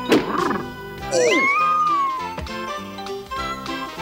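Cartoon background music with a sharp hit right at the start, then a high, drawn-out whining cry about a second in that swoops up, holds for about a second and slides down.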